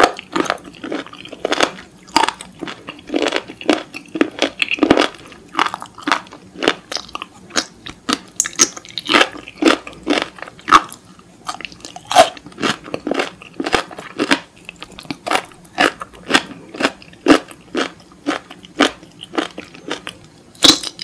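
Close-miked eating sounds: many irregular wet crunches and clicks of chewing raw seafood and pickled ginger.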